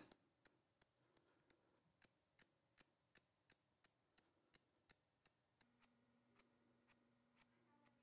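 Very faint, quick snips of haircutting scissors, about three a second, cutting along the perimeter line of a blunt bob. A faint low hum comes in about two-thirds of the way through.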